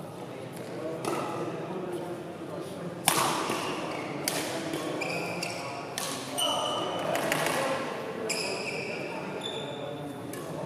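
Badminton rackets striking a shuttlecock in a fast doubles rally, with a series of sharp cracks, the loudest about three seconds in, ringing in a large hall. Court shoes squeak briefly on the floor between the shots.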